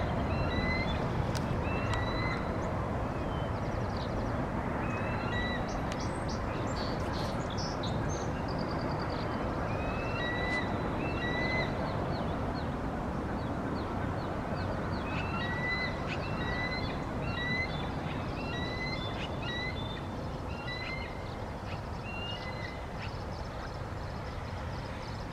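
Bald eagle giving runs of short, high chirping warning calls, repeated continuously, at an intruding eagle nearby. A steady low background rumble lies under the calls.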